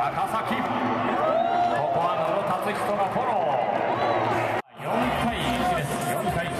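A man's voice talking continuously with crowd noise behind it, broken by a split-second dropout about three-quarters of the way through.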